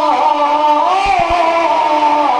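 A man's voice singing a devotional recitation through a microphone and PA. A long held note slides and bends in pitch, with two soft low thumps about a second in.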